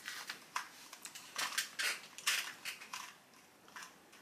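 Plastic Rubik's-style puzzle cube being scrambled by hand: a run of quick, irregular clicks and clacks as its layers are twisted, thinning out about three seconds in.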